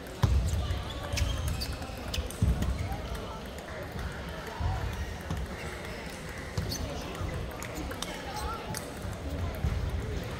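Table tennis rallies: the ball clicking sharply off paddles and the table in quick, irregular strikes, with a few low thuds among them, over the murmur of voices in a large hall.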